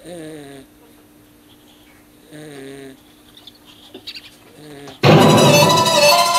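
A man's voice making three short, low 'uh' groans, each under a second long, with quiet between them. About five seconds in, loud electronic music cuts in suddenly.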